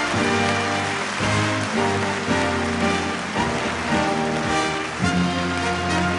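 A live orchestra playing a tune with notes changing about every half second, over steady audience applause.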